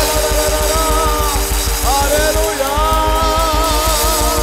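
Worship music with a band: a man's voice holding long, wavering sung notes over a fast, steady drum beat and sustained keyboard chords.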